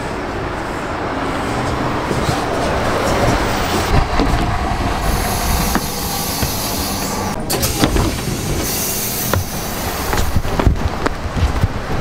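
Steady street traffic noise with a city bus running close by, a continuous low rumble. A few sharp knocks come from the camera being handled.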